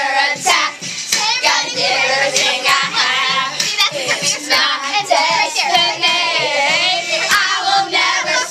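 A group of young girls singing loudly along to a pop song with a steady beat of about two beats a second.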